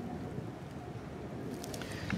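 Steady low outdoor background rumble, with a few faint light ticks near the end.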